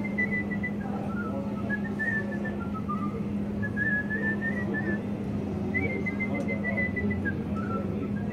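A man whistling a melody with a warbling tone, in short phrases that step up and down.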